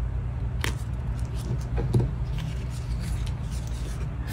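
Paper die-cut stickers handled and swapped, with light rustles and a few soft clicks over a steady low hum.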